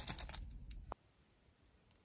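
Crinkling and rustling of a foil-lined paper pouch being handled as its top is sealed with tape. It stops abruptly about a second in, leaving near silence.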